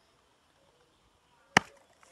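A single sharp smack about one and a half seconds in; otherwise near silence.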